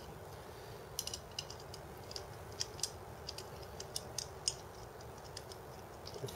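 Light, irregular clicks and taps of small metal parts: an M5 cap screw being turned with a hex key into a rail nut in the slot of an aluminium extrusion rail, with the rails knocking lightly against each other. The builder suspects the rail nut did not grab.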